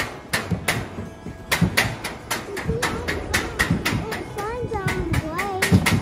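Mountain coaster sled running fast along its metal tube rails, its wheels clacking over the track joints at about four clacks a second. From about three seconds in, a rider's wavering voice comes over the clatter.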